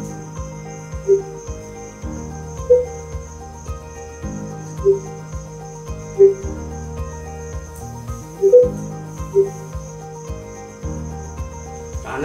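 Music playing from the Samsung 32T4350 TV's built-in speakers through its Tune Station app: held low notes that change every couple of seconds, with short bright melody notes above them.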